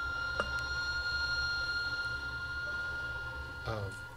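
A steady high tone held throughout, with fainter overtones above it, over a low hum. There is one sharp click about half a second in, and a short spoken "uh" near the end.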